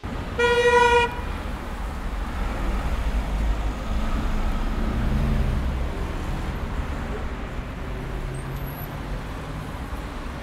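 A car horn toots once, for about half a second, near the start. Steady road-traffic noise with low engine rumble follows.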